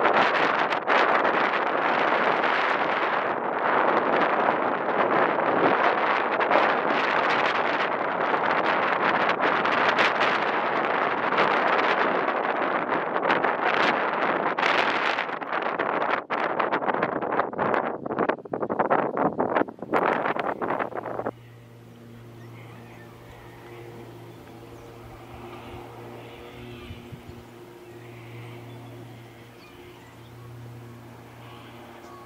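Wind buffeting the microphone in loud, uneven gusts. It cuts off abruptly about two-thirds of the way through, leaving a much quieter stretch with a faint low steady hum.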